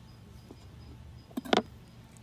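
Chef's knife cutting a red custard apple on a plastic cutting board, with two short knocks close together about a second and a half in.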